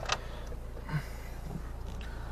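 Low, steady hum of a Mercedes car idling, heard from inside the cabin, with a sharp click just after the start and a soft thump about a second in.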